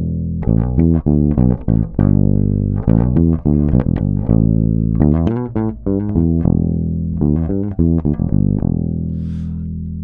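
1976 Rickenbacker 4000 electric bass with its single bridge pickup, tone and volume at maximum, recorded clean with no effects: a bassline of quickly plucked notes, ending on a held note that rings out and slowly fades.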